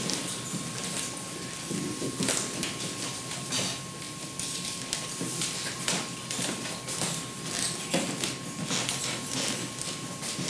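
Nail file rasping across a fingernail in short, irregular strokes, a couple each second, shaping a too-square nail edge into a smooth bevel for playing a nylon-string guitar. A faint steady tone runs underneath.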